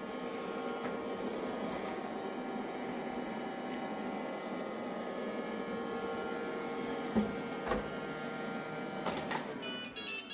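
Shark ION RV754 robot vacuum running with a steady motor hum as it drives back onto its charging dock, with two light knocks about seven seconds in. The motor sound stops just before the end as it docks.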